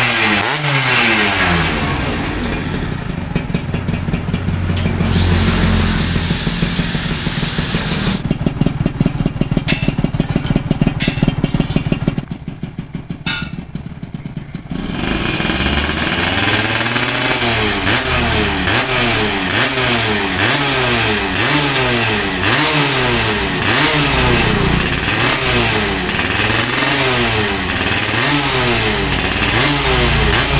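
Yamaha F1ZR two-stroke moped engine on its stand, revved again and again by hand through an aftermarket exhaust, its pitch rising and falling with each blip of the throttle. It drops back for a few seconds about twelve seconds in, then the repeated revving picks up again.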